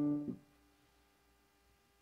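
Piano holding a final half-note chord, an octave D (D3 in the bass, D4 in the treble), that cuts off about a third of a second in with a soft key-release knock.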